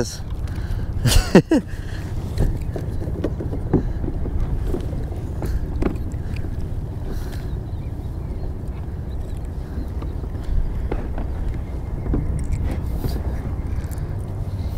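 Steady low rumble of wind buffeting a chest-mounted camera microphone out on open water, with a few small handling clicks and a brief voice-like sound about a second in.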